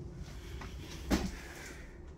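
A single short knock about a second in, over faint room noise.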